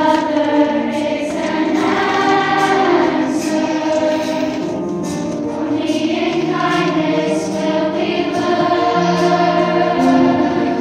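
Youth choir singing in long held notes that shift in pitch every second or two.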